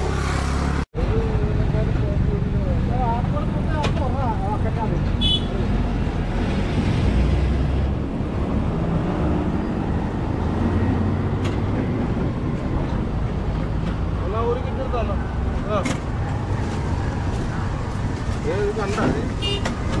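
Steady low rumble of road traffic passing close by, with people talking in the background. The sound drops out for an instant about a second in.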